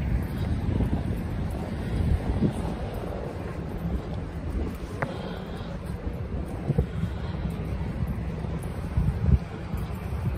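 Wind buffeting a handheld phone's microphone as a steady low rumble, over faint street traffic, with one brief click about halfway through.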